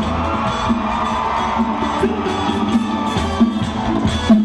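Live Latin band with horns and congas playing an instrumental passage of a merengue set, with the audience cheering and whooping over the music.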